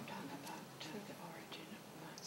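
Faint, indistinct murmured voices in a quiet room.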